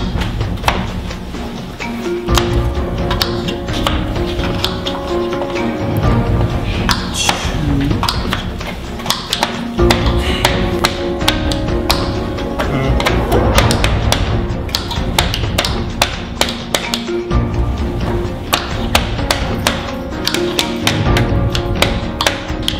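Background music over many quick, irregular knife chops on cutting boards as small potatoes are diced against the clock.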